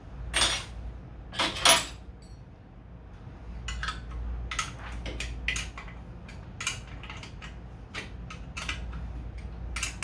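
Metal hand tools clinking and clattering against metal parts: irregular short clinks, the loudest a few in the first two seconds, followed by a run of lighter clinks.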